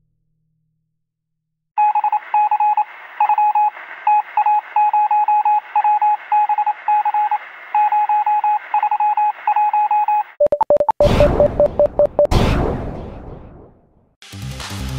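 Electronic sound effect: a single-pitched beep keyed on and off in irregular short and long pulses, like Morse code, over a faint static hiss. About ten seconds in, a loud burst of noise with a quick run of lower beeps takes over and fades away.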